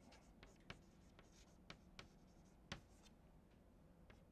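Faint chalk tapping and scratching on a blackboard as words are written: a scatter of light, irregular ticks.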